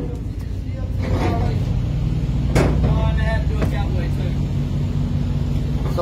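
A heavy truck's diesel engine idling, a steady low hum. One sharp click comes about two and a half seconds in.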